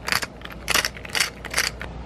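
Hand-twisted pepper mill grinding black peppercorns: a run of short grinding strokes, about two a second.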